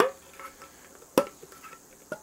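Lid of a metal can being pried open with a tool: two sharp metallic clicks about a second apart, the first with a brief ring, and a few faint small clicks between.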